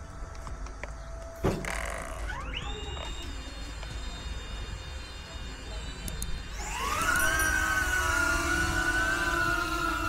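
DJI Neo quadcopter's upgraded 1103 11000 kV brushless motors spooling up. After a click about one and a half seconds in, a rising whine of several pitches settles into a steady hum. Around seven seconds in it climbs higher and louder as the throttle is raised.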